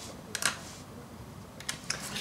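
A few light clicks and handling noises from a makeup pencil being handled: a short cluster about half a second in and two single clicks near the end.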